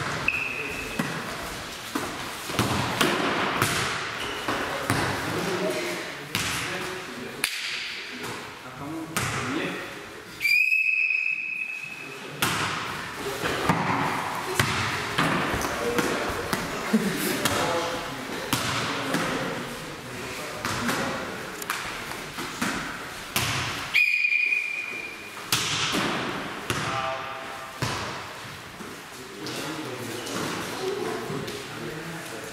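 Indoor volleyball play: the ball being struck and thudding on the floor again and again, with a coach's whistle blown three times: a short blast at the start and two longer blasts, about ten seconds in and near twenty-four seconds in.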